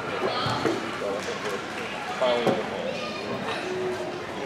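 Background chatter of many voices echoing in a large gymnasium, with a few soft knocks and footfalls mixed in.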